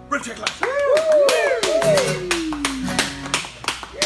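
A few people clapping and whooping, with sharp handclaps throughout and rising-and-falling cheers, one long falling whoop in the middle.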